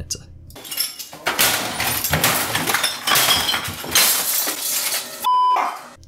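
Glass shattering, with clinking debris going on for several seconds, likely a sound effect dropped in after the line about breaking the monitor. Near the end comes a short steady beep.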